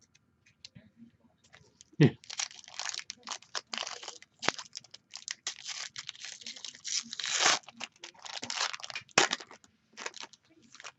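A foil trading-card pack being torn open and crinkled by hand: a sharp knock about two seconds in, then a dense run of crackling and tearing foil until shortly before the end.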